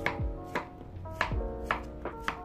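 Chef's knife chopping cucumber on a wooden cutting board, several sharp strikes about half a second apart, over background music with a steady beat.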